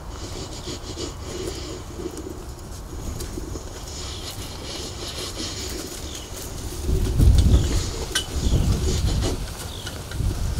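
Outdoor ambience with birds calling faintly, then low rumbling thumps on the microphone for a couple of seconds near the end.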